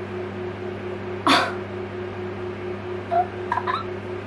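A short, sharp, breathy vocal sound from a woman, like a hiccup or quick exhale, about a second in, over a steady low hum. A few small pitched vocal sounds follow near the end.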